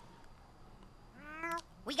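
A cat meowing once, a short rising meow about a second in, from a cartoon soundtrack.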